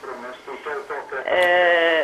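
A woman caller's voice over a telephone line, thin and cut off in the highs, starting to speak and ending in one long held vowel.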